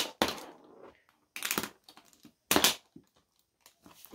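Short plastic clicks and clatters from a B-Daman toy marble shooter being handled on a plastic tray: about four brief bursts with quiet gaps between.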